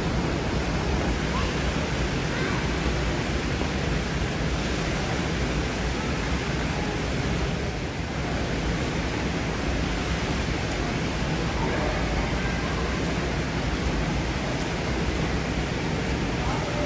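Indoor swimming pool ambience: a steady wash of water noise from swimmers splashing through their strokes, dipping slightly about halfway through.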